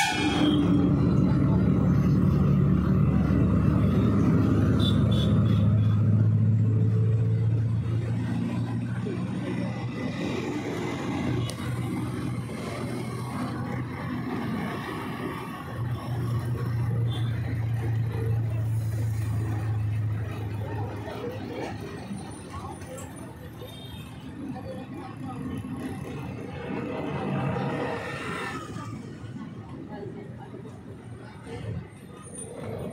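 A steady low hum like a running vehicle engine, with background noise and indistinct voices.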